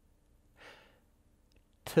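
A man's single short, soft breath taken during a pause in speech, about half a second in, close on a headset microphone; otherwise a faint steady room hum, with a spoken word starting at the very end.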